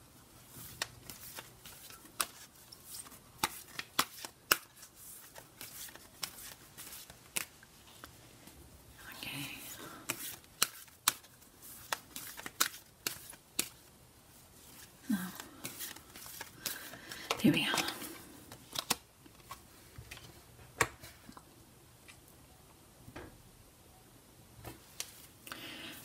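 A deck of oracle cards being shuffled by hand: scattered soft clicks and flicks of card edges, with two longer rustling shuffles, one about a third of the way in and one about two-thirds in.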